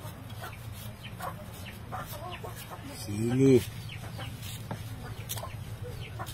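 Chickens clucking in the background, with one louder, longer call rising and falling about three seconds in.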